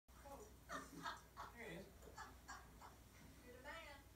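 Faint, indistinct speech.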